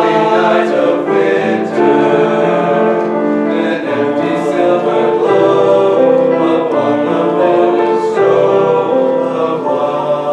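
A male choir of teenage boys singing in several-part harmony, holding long chords that move from one to the next.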